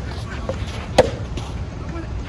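Soft tennis ball struck by a racket about a second in: a single sharp pop of the hollow rubber ball. A fainter tap comes about half a second in.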